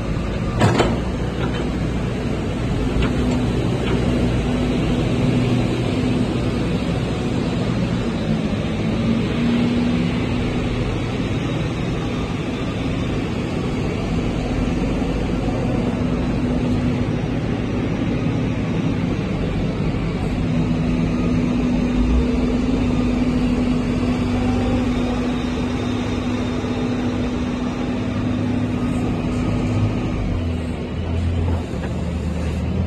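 Caterpillar 312D excavator's diesel engine running steadily while the machine is worked, with a steady hum throughout and a single clank about a second in.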